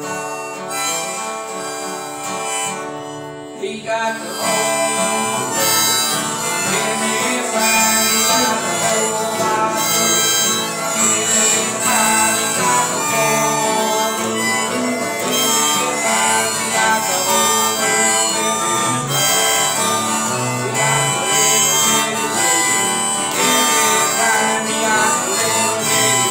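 Harmonica played by children, with acoustic guitars strumming along on a gospel song. The music starts thin and swells fuller about four seconds in.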